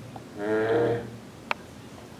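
A man's short wordless "hmm", held on one low pitch for about half a second, followed by a single sharp click, like a mouse click, about a second later.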